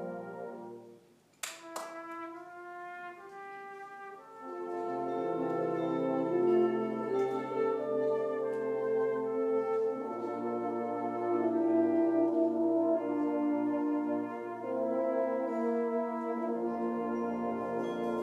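Brass band of cornets, horns, euphoniums, trombones and tubas playing sustained chords. The music drops away soon after the start, with a sharp click about a second and a half in, then the full band comes back in louder from about four and a half seconds.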